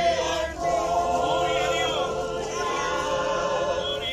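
A congregation of men and women singing a hymn together in unison, with long held notes.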